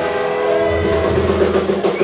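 Live rockabilly band holding a sustained chord: electric guitar and upright bass ring out in steady, horn-like tones with no drum beat.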